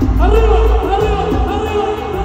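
Live regional Mexican band music played loud in an arena, with heavy bass and a male voice singing over it from just after the start.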